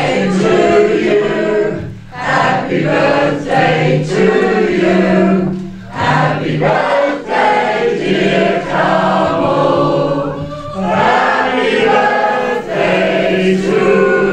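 A roomful of party guests singing together, men's and women's voices in loud sung phrases with brief breaks for breath about every four seconds.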